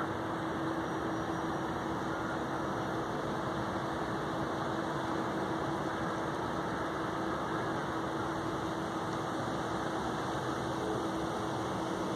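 A steady rushing hum with one constant low-middle tone, like building ventilation or other machinery running. It holds at the same level throughout, with no distinct crow calls standing out.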